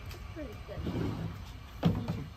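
Faint voices in the background, with a single sharp knock near the end.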